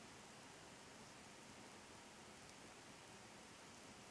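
Near silence: a steady faint hiss of room tone, with a couple of very faint ticks.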